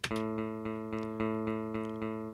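Sampled clean electric guitar (Studio One's Presence 'Strato Guitar') playing one repeated low A in even eighth notes at 110 bpm, a little under four notes a second, the first note of the bar given a slight accent.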